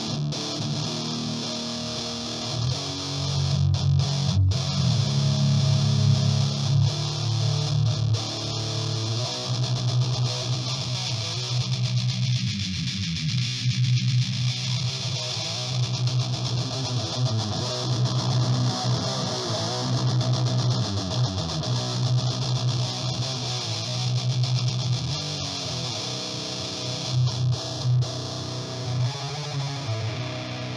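Electric guitar played through an Exar Squealer SR-04 distortion pedal, a Jacques Mercer Box clone: heavily distorted riffing built on low notes, with the midrange dipping for a few seconds in the middle as the EQ knobs are turned.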